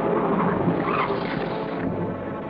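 Dramatic orchestral film score with held notes over a loud rushing noise, which thins out near the end.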